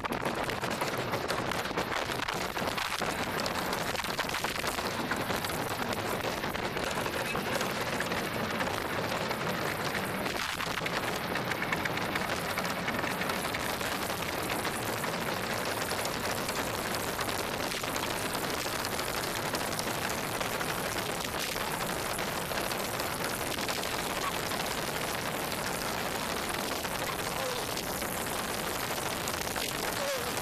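Bobsled running down an ice track at speed: a steady, loud rush and rumble from the steel runners on the ice and the air rushing past.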